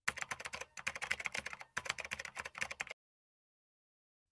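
Rapid computer-keyboard typing, a quick run of clicking keystrokes. It comes in two runs with a brief pause in between and stops abruptly about three seconds in.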